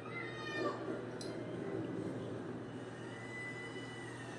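A meow-like call that falls in pitch about a second long near the start, followed by a long, steady, whistle-like tone near the end that begins to slide down.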